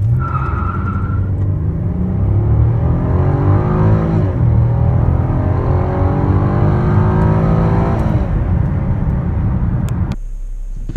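2017 Chevy Impala's 3.6-litre V6 at full throttle from a standstill to about 60 mph, heard from inside the cabin, with the front tires squealing briefly at the launch. The engine note climbs with the revs and drops at two upshifts of the six-speed automatic, about four and eight seconds in.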